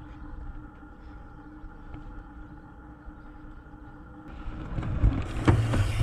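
Steady electric whine of a wearable camera gimbal's motors: several level tones held together, the motor noise that spoils the camera's own sound. About four and a half seconds in, louder rumbling and knocks take over as a mountain bike rolls across a wooden ramp and jumps off it.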